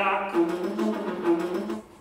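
Orchestral music from a live opera performance: sustained notes held together, breaking off about 1.8 seconds in.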